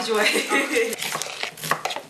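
Women's voices for about the first second, then a handful of light, irregular knocks and clatters from kitchen prep work at a counter.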